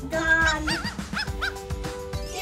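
A dog barking and yipping, one longer bark followed by three or four short yips in the first second and a half, over upbeat background music with a steady beat.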